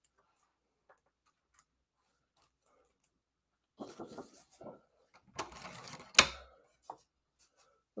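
Cardstock being handled: a short dry rustle of paper sliding on the table, ending in a single sharp click about six seconds in, with a brief low murmur of voice just before.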